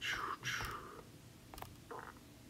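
Two soft whispered breaths in the first second, then a few faint taps of a finger on an iPad touchscreen.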